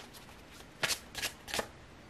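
Tarot deck being shuffled by hand: three short, sharp card snaps about a third of a second apart, starting a little under a second in.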